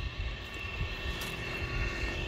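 Steady background rumble and hiss with a few faint steady tones, a mechanical-sounding noise bed under the recording with no speech.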